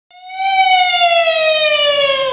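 A woman's high sung note in Peking opera style, held for over two seconds and sliding slowly down in pitch.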